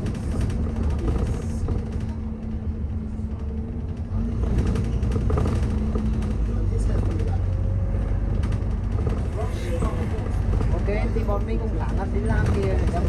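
Inside a moving London double-decker bus: a steady low drone with a humming tone, getting louder about four seconds in. Passengers are talking in the background, more clearly near the end.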